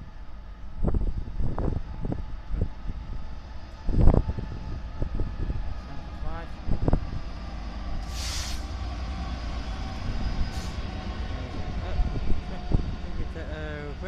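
GBRf Class 66 diesel locomotive, its EMD two-stroke V12 running, passing through the station with a steady deep rumble and repeated knocks of its wheels over the rails, drawing a rake of ex-Heathrow Express Class 332 electric units behind it. A short hiss comes about eight seconds in.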